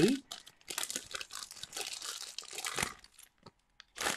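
Light crinkling and rustling with small clicks as beading materials are handled, stopping about three seconds in.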